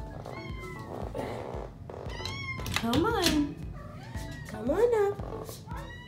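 A cat meowing from the bottom of the stairs, with two loud, drawn-out meows that rise and fall in pitch, about three and five seconds in.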